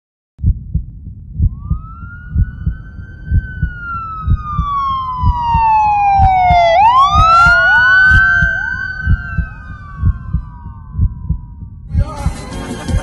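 A police-style siren wails in slow sweeps, falling for several seconds and then rising again in several overlapping, echoing copies before fading. Underneath, a deep heartbeat-like double thump repeats about once a second.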